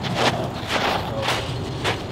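Footsteps on a dirt baseball infield, a few steps about half a second apart.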